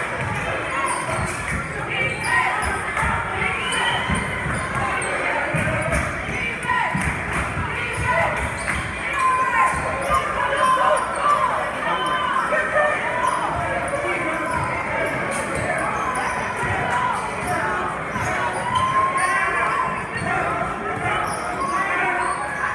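A basketball bouncing on a hardwood gym floor during live play, with players' footsteps and voices from the crowd ringing through the large hall.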